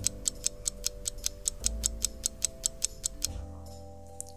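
Clock-ticking sound effect: rapid, evenly spaced ticks, about five a second, as an animated minute hand sweeps round the dial. The ticks stop shortly before the end, over soft, steady background music.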